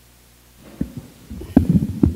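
Microphone handling noise as a table microphone is switched on and checked: low thumps and rumbling, starting about half a second in and growing louder in the second half.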